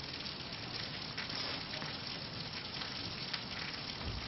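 Steady hiss of room tone with a few faint short ticks.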